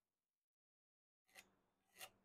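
Near silence, with two very faint, brief scratchy sounds in the second half.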